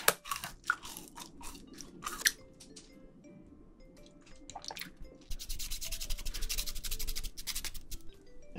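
Teeth crunching and tearing into a raw sugar cane stalk in the first couple of seconds, followed by a quiet background melody. From about five seconds in, a fast, continuous rasping as a knife shaves the hard rind off the cane.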